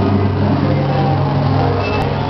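Experimental sound-art installation playing through small speakers: a steady low drone over a hiss of noise.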